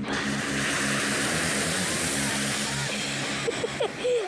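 2020 Ford Expedition passing on a dirt road, its tyres and engine making a steady rush of noise, over background music with a stepping low melody.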